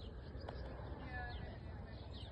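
Outdoor ambience: a steady low rumble of wind on the microphone and small birds chirping, with one brief pitched call about a second in.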